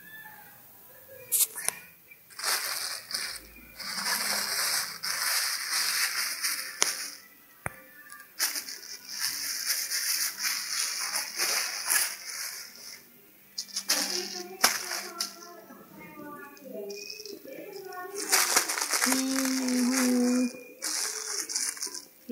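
Plastic bags crinkling in several stretches of a few seconds each as they are handled. A voice or background music lies under them.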